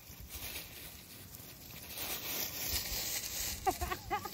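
Puppies scampering through dry fallen leaves, the leaves rustling and crackling, louder in the second half. Just before the end comes a brief vocal sound with a pitch that bends up and down.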